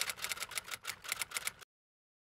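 Typewriter-style key clicks, a typing sound effect, going at about eight to ten a second and cutting off suddenly about one and a half seconds in.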